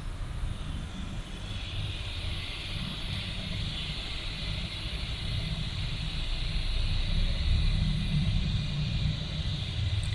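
Steady low rumble with a hiss that comes up about a second and a half in: background noise on the microphone, with no distinct event.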